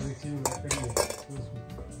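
Stainless steel plates and bowls clinking and clattering as they are handled and set down, with several sharp clinks that ring briefly, the loudest about a second in.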